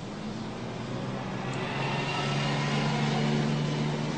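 Street traffic with a motor vehicle passing: a low engine hum that grows louder through the second half and peaks near the end.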